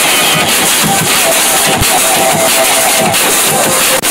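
Drum and bass music played loud over a club sound system, heard as a dense, unbroken wash with a wavering mid-pitched line running over it.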